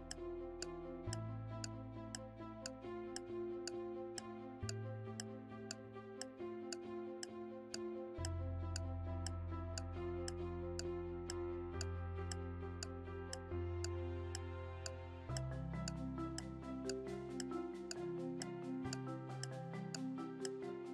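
Ticking-clock sound effect for a quiz answer timer, a steady tick about twice a second, over background music with a slowly changing bass line.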